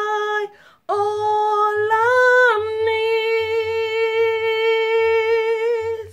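A woman singing solo with long held notes. A note breaks off about half a second in, and after a short breath a new note starts, lifts in pitch around two seconds in, then settles and is held steadily for several seconds.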